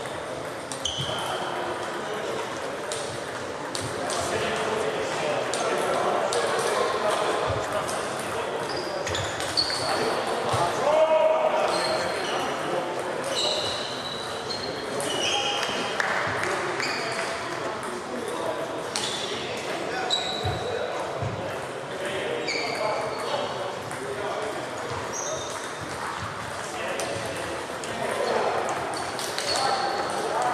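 Celluloid table tennis balls clicking off bats and tables again and again, each hit a short sharp tick, some with a brief high ping, echoing in a large sports hall over background voices.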